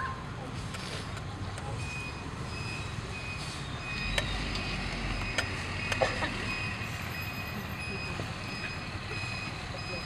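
A run of evenly spaced high electronic beeps, starting about two seconds in and going on steadily, like a vehicle's reversing alarm, over a low background hum of the crowd. A few sharp clicks stand out about halfway through.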